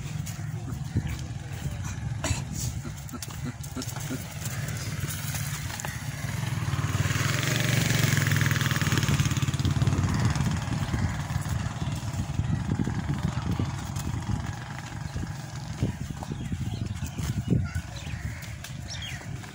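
A motor vehicle's engine passing close by, its noise swelling to a peak about halfway through and then fading, over a steady low rumble.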